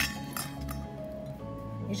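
Soft background music with held notes, and a light clink of kitchenware being handled about a third of a second in.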